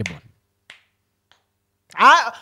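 A man's laugh trails off, then a single sharp finger snap about two-thirds of a second in, followed by a fainter click just after a second in.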